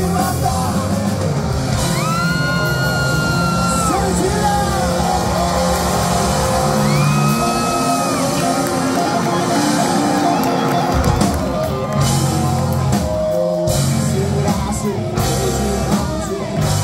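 Punk-rock band playing live with electric guitars, bass, drums and accordion, with sung and yelled vocals and a few long held notes. The bottom end thins out for a few seconds and the full band comes back in about eleven seconds in.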